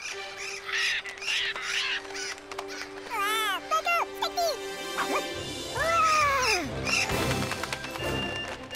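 Cartoon soundtrack: light music under high cartoon vocalising, with several short rising-and-falling cries in the middle and a longer arched cry after it.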